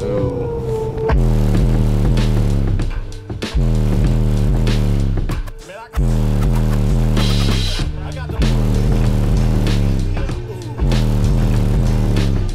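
Bass-heavy music played loud through a car stereo's subwoofers, heard inside the cabin. A held note opens it, then about a second in deep bass kicks in in repeating falling-pitch phrases, with a few short breaks.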